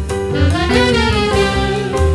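Live small jazz combo playing: saxophone over double bass and drums, with the two singers' voices and trombone in the ensemble. Near the middle a melody line slides up and then back down.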